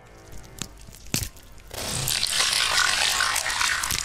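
Gore sound effect of flesh being torn and bones cracking: two sharp cracks in the first second or so, then about two seconds of loud crunching and tearing that fades near the end.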